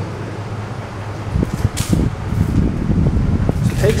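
Low, irregular rumble of noise on a handheld camera's microphone, starting about a second and a half in; before it, a steady low hum.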